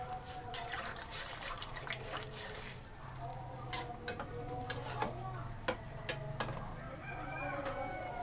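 Metal spatula stirring sardines in sauce in a wok, scraping and knocking against the pan, with a run of sharp clicks in the second half.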